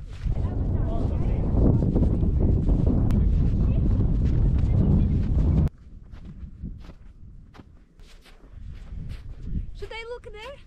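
Loud wind buffeting the microphone on an exposed snowy ridge, with faint voices under it. It cuts off abruptly about halfway through. What follows is a much quieter background with scattered soft clicks and a voice starting near the end.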